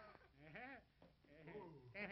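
A cartoon character's voice, quiet and without words, making two short sounds whose pitch rises and falls.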